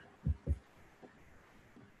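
Two soft, low thumps about a quarter of a second apart, early on, followed by near-silent room tone.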